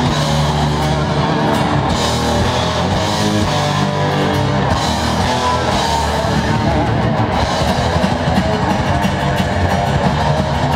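Live metal band playing loud, with electric guitar, bass guitar and drum kit. Low held notes in the first seconds give way to a busier, choppier passage from about halfway.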